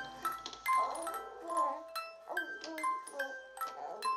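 Live band playing a sparse, quiet passage: bell-like percussion notes struck a few times a second, ringing at different pitches, with short pitched sounds sliding downward between them. A low sustained drone fades out in the first second or so.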